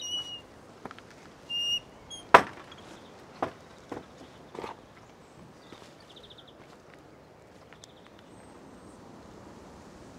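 Footsteps on a gravel path, a few steps between about three and five seconds in, with one sharp knock about two and a half seconds in as the loudest sound. Small birds give short whistled calls in the first two seconds and a brief trill near the middle.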